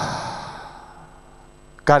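A man's long sigh breathed out into a handheld microphone, fading away over about the first second; he starts speaking again near the end.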